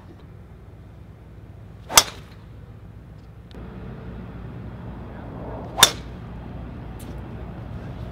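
Two golf tee shots: a golf club head striking the ball with a sharp crack, once about two seconds in and again near six seconds.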